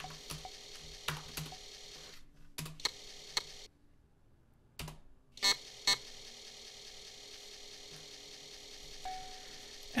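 Scattered single keystrokes on a computer keyboard, mostly in the first six seconds, over a steady faint hum, with about a second of near silence in the middle.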